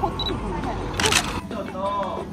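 Women's voices chatting over a steady low street rumble, broken about a second in by one short, sharp click-like burst.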